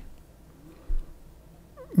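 Quiet room tone with one brief, low thump about a second in.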